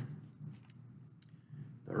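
A quiet pause in a man's talk: the fading end of a drawn-out "um", then faint room tone with a couple of soft clicks, and speech picking up again at the very end.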